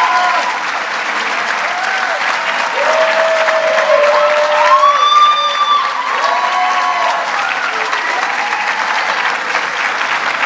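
Audience applauding steadily, with a few voices calling out long cheers over the clapping from a few seconds in.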